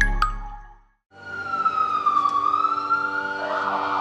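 The tail of a chiming logo jingle dies away in the first second. An ambulance siren then fades in, its wail gliding down in pitch and back up, with a rougher, noisier layer joining near the end.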